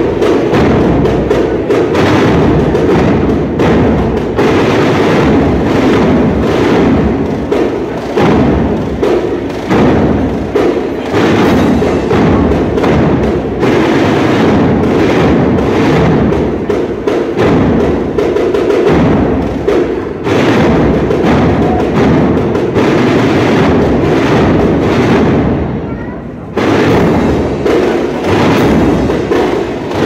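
A Holy Week brass band of trumpets, cornets and trombones with drums playing a processional march, loud and continuous with a steady drum beat. The sound thins briefly near the end before the full band comes back in.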